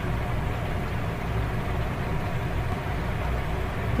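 Steady low rumbling background noise with a faint hiss, unchanging throughout, with no distinct sound events.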